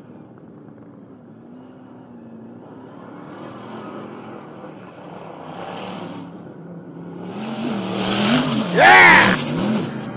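Sand buggy engine revving under load as it climbs a dune, its pitch rising and falling and growing steadily louder from about seven seconds in. A loud shout cuts over it near the end.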